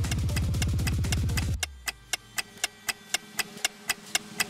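Countdown timer sound effect: a steady clock-like ticking while the guessing time runs out. A low music bed under the ticks cuts off about one and a half seconds in, leaving the ticking on its own at about four ticks a second.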